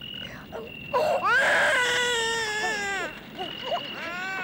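A person crying: one long wailing cry starts about a second in, rising and then slowly falling for about two seconds, with short sobbing cries before and after it. A thin, high, steady note breaks in and out behind it.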